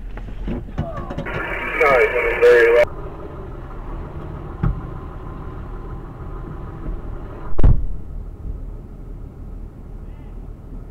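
Two-way fire radio with a short, garbled transmission about a second in, over the steady idle of the vehicle's engine. A single loud thump comes near the end.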